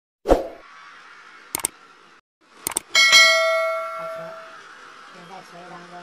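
Subscribe-button sound effects: a hit, a couple of short clicks, then a bell ding about three seconds in that rings out and fades over about a second and a half.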